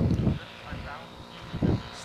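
Wind buffeting the microphone, then the faint, steady drone of a radio-controlled model warbird's engine throttled back as it lines up to land, with brief muffled voices.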